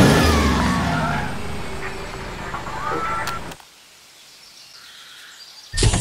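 A motor vehicle passing by, its noise fading away over the first three seconds or so, followed by a quiet stretch of outdoor ambience. Guitar music starts just before the end.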